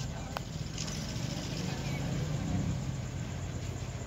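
Indistinct voices of people over steady background bustle, with a brief click about half a second in.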